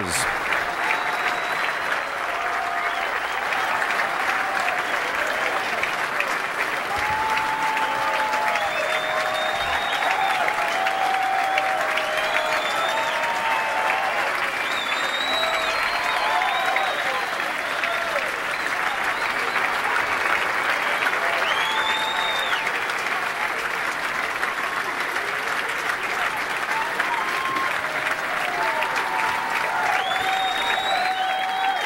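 A large golf gallery applauding steadily and without let-up, with scattered whoops and whistles rising above the clapping.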